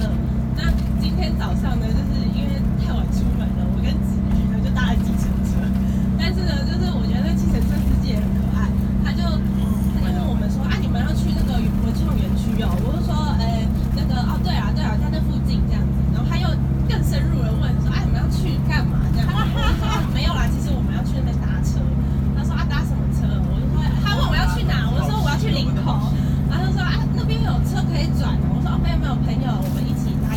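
A woman talking into a microphone on a tour coach, over the coach engine's steady low drone.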